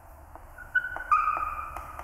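Chalk writing on a blackboard: a few light taps of the chalk, then two high squeaks, a short one about three-quarters of a second in and a longer, slightly lower one lasting most of a second.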